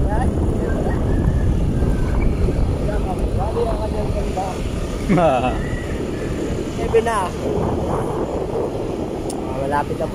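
Steady rushing rumble of a vehicle moving along a road, with wind buffeting the microphone. A few short calls from voices break in partway through.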